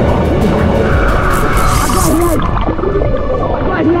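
Background music over splashing, churning pool water, with voices. About two and a half seconds in, the high end drops out and the sound turns muffled.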